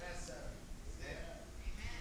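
Faint voices from the congregation calling out during a pause in the preaching, one of them drawn out and wavering.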